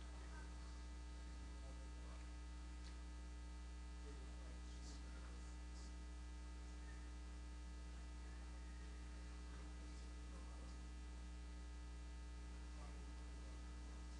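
Steady, faint electrical mains hum, a low buzz with a stack of even overtones that does not change.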